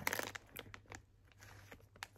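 A plastic snack pouch crinkling as fingers handle it and pick inside it. There is a short burst of crackling at the start, then scattered faint crackles.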